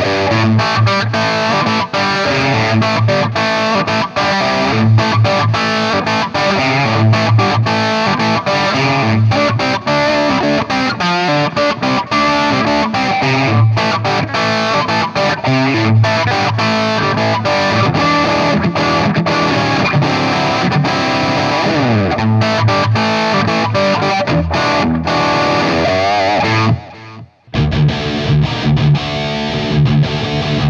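Harley Benton CST-24HB electric guitar played with distortion, running through busy single-note lines and chords. Near the end the playing stops abruptly for a moment, then starts again on lower notes.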